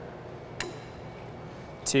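Quiet workshop room tone with one short, sharp click about half a second in, as a digital protractor is set onto the freshly bent sheet-metal piece.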